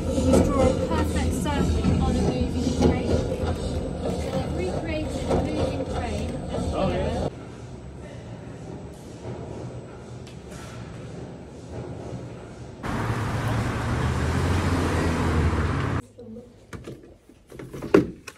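Several people talking over one another and laughing. After a sudden cut it drops to quiet room noise, then a steady rushing noise for a few seconds, then a sharp knock near the end.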